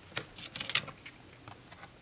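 Light clicks and taps of game cards being picked up and laid onto a stack on a table: a sharp click just after the start, a short run of quick taps around the middle, and a faint tap near the end.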